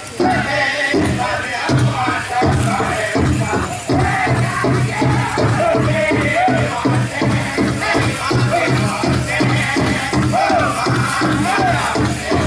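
Powwow drum group singing over a large drum struck in a steady, even beat, the song that accompanies the dancers' grand entry.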